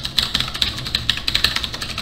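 Fast typing on a computer keyboard: a quick, uneven run of key clicks as an email address is entered.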